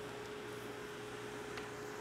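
Screen-printing spot-gun exhaust unit running: a steady fan hiss with a low, constant hum tone.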